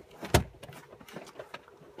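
A single sharp click about a third of a second in, then faint scattered ticks, from a hand handling test equipment at the oscilloscope.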